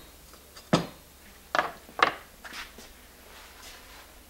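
Three sharp metal knocks a little under a second apart, then a few faint taps, as the shut-off acetylene soldering torch is handled in its wire stand on a wooden bench. No flame hiss: the torch is off.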